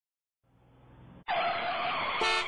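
Cartoon vehicle sound effect: a faint noise swells, then about a second and a quarter in a loud tire screech breaks in as the vehicle skids to a stop.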